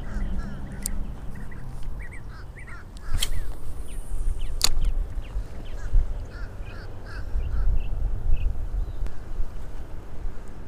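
Birds calling in short, repeated notes, in two spells, over wind rumbling on the microphone, with a few sharp clicks.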